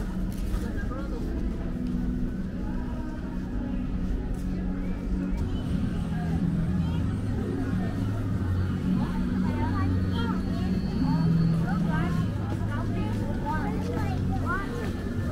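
Street ambience of passersby talking as they walk by, over a low, steady hum of traffic.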